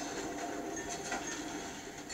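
Steady hiss of rain.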